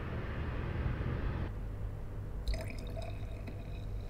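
White wine being poured from a bottle into a wine glass, with a short sharp click about two and a half seconds in.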